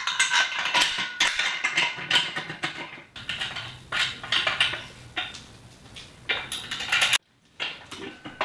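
Irregular metal clinking and knocking as steel carriage bolts and nuts are fitted by hand into a square-tube steel rack base, with a short break near the end.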